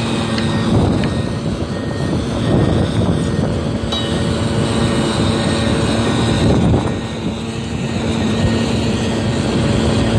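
A steady machine engine drone with a constant hum, swelling in noisy surges a few times.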